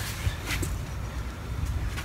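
Low, steady outdoor background rumble with a couple of faint knocks.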